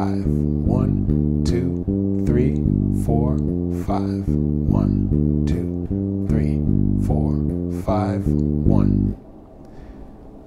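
Five-string electric bass playing a steady repeating eighth-note line in 5/8, with a man's voice counting quarter notes over it. The bass stops about nine seconds in.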